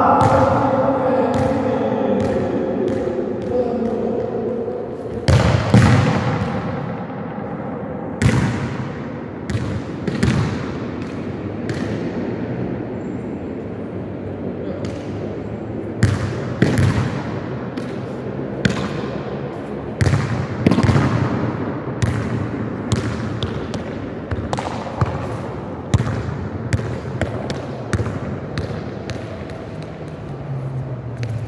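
A football striking and bouncing on a hard indoor futsal court, each hit echoing round the hall. The hits come irregularly, a few seconds apart at first and more closely near the end. A raised voice echoes in the first few seconds.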